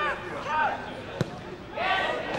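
A football kicked once, a single sharp thud about a second in, amid scattered shouts from players and spectators.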